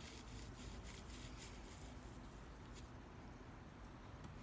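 Faint scratching and crackling of loose perlite as a pen end is pushed into a seedling-tray cell to make a planting hole, a few soft crackles over quiet background noise.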